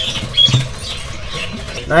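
Small caged birds giving faint, short, high chirps over market background noise, with a low thump about half a second in.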